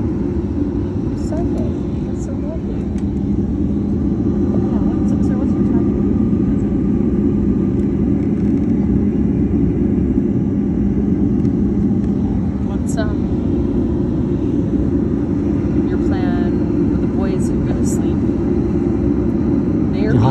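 Steady low drone and hum inside a jet airliner's cabin while the plane stands on the ground being de-iced.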